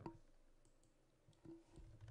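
Near silence, with a few faint computer-mouse clicks while points are picked on screen.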